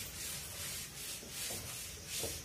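Handwriting: a writing tip rubbing across the writing surface in a run of short, soft scratching strokes.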